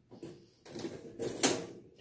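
Objects being handled and moved: rustling, with one sharp knock about one and a half seconds in.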